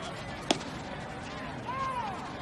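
A pitched baseball strikes once with a single sharp crack, about half a second in, over steady ballpark background noise. Near the end a short call rises and falls in pitch.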